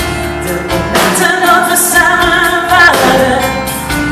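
A female vocalist singing live into a microphone over band accompaniment, holding one long note from about a second in to near the end.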